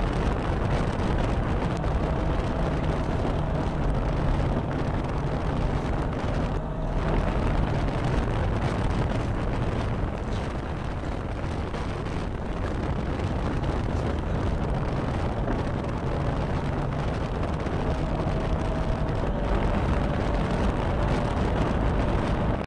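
Steady road and engine noise of a Toyota FJ Cruiser driving along at speed, heard inside the cabin.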